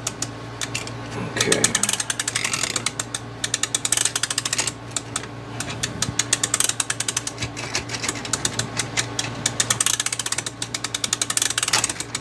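Rapid ratchet clicking from a homemade mainspring let-down winder in runs, with short breaks about five and ten seconds in, as the handle is turned to let a Seikosha clock's strike mainspring unwind slowly. The old spring is being coaxed, as it may not have been unwound for years.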